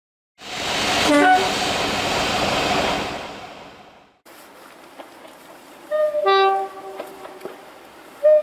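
Diesel locomotive running loudly, with a brief horn blip about a second in; the noise fades out by four seconds. After a sudden change to quieter background, a two-tone diesel locomotive horn sounds: a short high note, then a longer low one.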